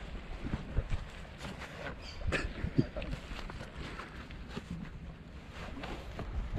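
A neoprene wetsuit being pulled on over the legs: soft rubbing and a few short scrapes and clicks, over a low wind rumble on the microphone.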